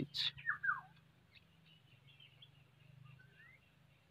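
Birds chirping faintly: a few short falling chirps just after the start and scattered faint tweets later, over a low steady hum.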